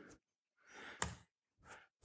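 Mostly quiet pause with a faint breath from the speaker at the lectern microphone about a second in, ending in a short click, probably from the mouth.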